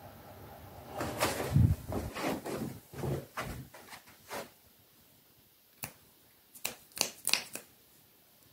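Rustling and handling noise with a few soft thuds for a few seconds, then a quick run of about five sharp clicks near the end.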